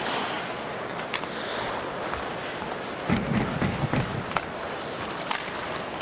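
Ice hockey game in play in an arena: a steady crowd hum with several sharp clacks of sticks and puck spread through it.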